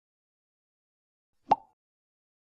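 A single short pop sound effect about one and a half seconds in.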